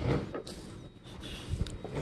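Faint knocks and rubbing as a classroom table is shifted over carpet, with a couple of dull thumps about a second and a half in.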